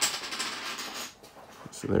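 Fingers handling and pressing together the small plastic parts of a miniature figure, making soft rustling and light clicks, busiest in the first second.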